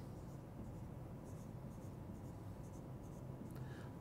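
Marker pen writing on a whiteboard: short, faint strokes as small circles are drawn, a few between one and two seconds in and again near the end, over a low steady room hum.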